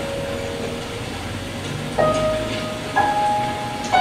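Slow piano music: single notes struck about a second apart, each left to ring out.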